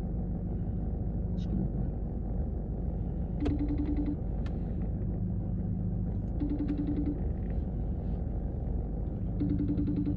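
iPhone FaceTime outgoing-call ringing tone: three short pulsed rings about three seconds apart while the call is still connecting, over a steady low rumble.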